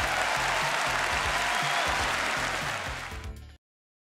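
Audience applause over music with a bass line; both cut off abruptly about three and a half seconds in.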